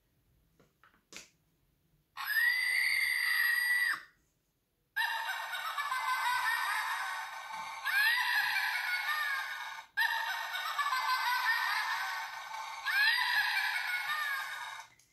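Battery-powered toy witch doll's sound effect, set off by pressing its hand. About two seconds in it gives a shrill held screech, then plays a cackling 'ho-ho-ho' laugh twice over, the second starting about ten seconds in.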